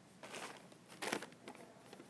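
Faint rustling and crinkling of a sheet of paper and a plastic slime tub being handled, in two short bursts, the louder one about a second in.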